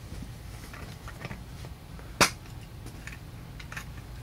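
Small clicks and taps of hard plastic as magnifier lenses are handled in their clear plastic case, with one sharp snap about halfway through that is the loudest sound.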